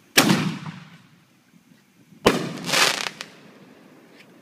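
A consumer aerial firework goes off. It launches with a loud pop and a fading hiss, and about two seconds later a sharp bang and about a second of hiss follow as the shell bursts into a spray of sparks.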